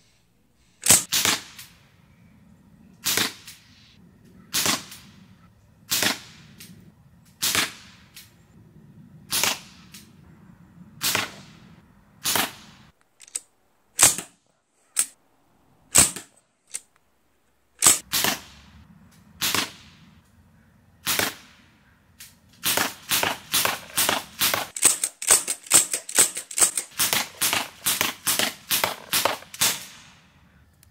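Sig Sauer MPX .177 semi-automatic pellet rifle, powered by a high-pressure air tank, firing single shots about every one and a half seconds. After about twenty seconds it fires a rapid string of shots, several a second.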